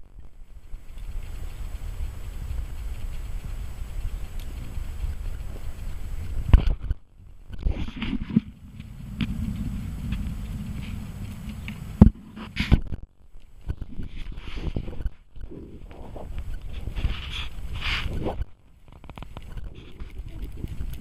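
Wind rumbling on an outdoor microphone, rising and falling, with two sharp knocks (about six and twelve seconds in) and several brief drop-outs.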